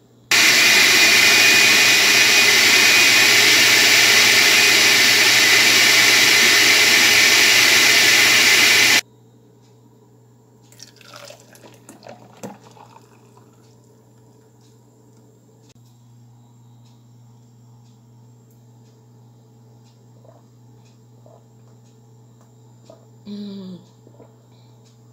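Oster blender running at one steady speed for about nine seconds, liquidising apple, spinach, celery and lemon with water into green juice; it starts and stops abruptly. A few seconds later there is faint sloshing as the thick juice is poured from the glass jar into a plastic cup.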